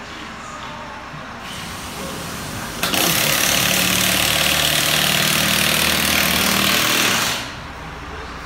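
A loud power tool running in one steady burst of about four and a half seconds, starting suddenly about three seconds in and stopping shortly before the end.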